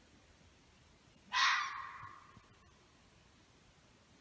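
A single hoarse, raspy scream from an unseen wild animal. It starts suddenly about a second in and trails off over about a second.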